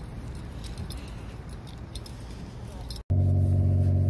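Mitsubishi Outlander engine idling in Park after a sudden cut about three seconds in, with a loud, steady low exhaust drone, typical of a car whose catalytic converter has been stolen. Before the cut there is only a low background rumble.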